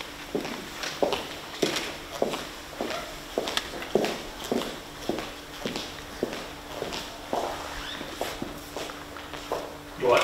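Footsteps of two people, leather shoes and high heels, clicking on a hard marble floor in a brisk series of about two to three steps a second, which stop shortly before the end. A faint steady hum lies underneath.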